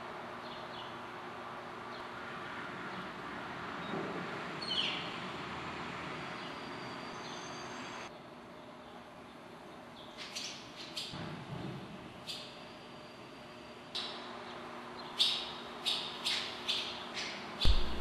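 Barn swallows at their nest with young giving short, high chirps and twitters, a few at first and then louder and closer together in the last few seconds. A steady background hiss drops away about eight seconds in.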